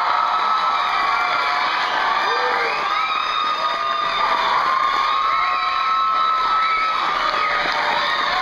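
Audience cheering, with many shrill overlapping screams and whoops. It is loud and steady throughout.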